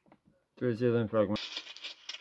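A man's recorded voice played back through a computer speaker, heard for under a second and cut off abruptly, followed by a steady hiss.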